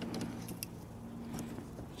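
Faint, light metallic clicks of needle-nose pliers working at a fuse in a truck's under-hood fuse box, over a steady low hum.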